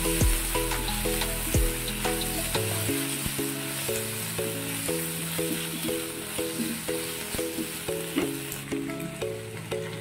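Chopped onion and capsicum sizzling in oil with soy and tomato sauce in a nonstick kadai, stirred with a silicone spatula, with light clicks from the stirring. Background music with a steady melody plays over it.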